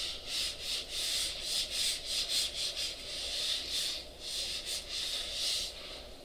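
Whiteboard eraser wiping a whiteboard: a rapid run of back-and-forth rubbing strokes, about two to three a second, that stop near the end.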